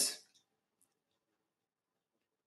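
The last syllable of a man's commentary fading out, then near silence.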